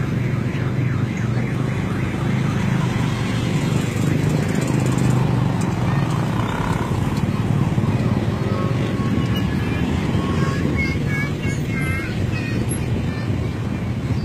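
A slow procession of cars and pickup trucks driving past, their engines running steadily. Short warbling high tones come and go in the second half.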